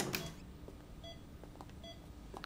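A click, then two short, faint electronic beeps under a second apart.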